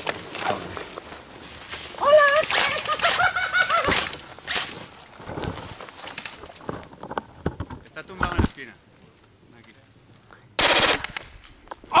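Airsoft rifle firing one short full-auto burst, under a second long, near the end. Before it come clicks and rustling as the gun is handled in dry brush.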